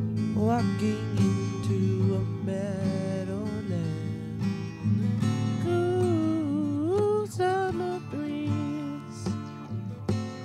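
Music: a strummed acoustic guitar with a sliding, wavering melody line over it.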